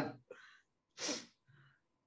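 A man yawning: a short breathy, falling vocal exhale through a wide-open mouth about a second in.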